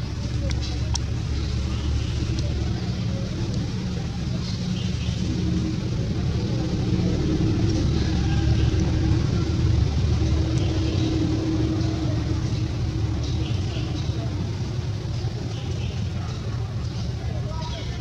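Continuous low rumbling background noise. A steady hum swells in the middle and fades again, with faint short high chirps scattered over it.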